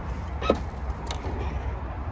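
Rear liftgate of an SUV being released and lifting open: a short sharp sound about half a second in and a fainter click about a second in, over a steady low rumble.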